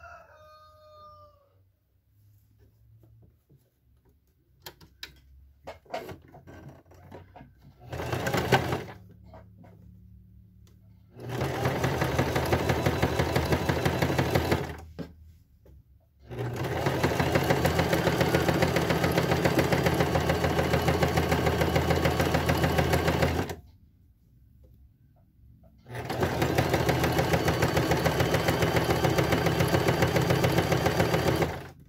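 Domestic electric sewing machine sewing a zigzag stitch along a fabric edge, running in three long, evenly rhythmic runs with pauses between, after a brief burst about eight seconds in. A rooster crows briefly at the very start, and light clicks of the fabric being handled come before the sewing.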